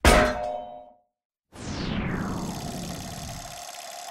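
Logo-sting sound effects: a metallic clang that rings out and dies away within a second, a short silence, then a long falling sweep that settles into a steady held tone and fades.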